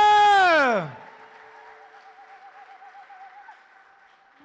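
A loud, long held shout or cry on one pitch that slides down and dies away about a second in. A faint wavering tone lingers after it in the hall's echo.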